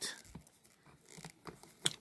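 Faint rustling and peeling of a cloth cape being pulled off the tape that holds it to an action figure, with a small sharp click near the end.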